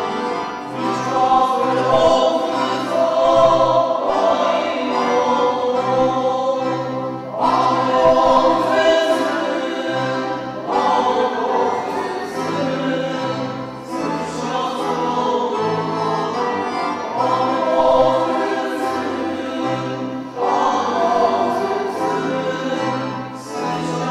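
Góral highland band singing a slow, hymn-like song together, in phrases a few seconds long, over a bass line that moves in steps.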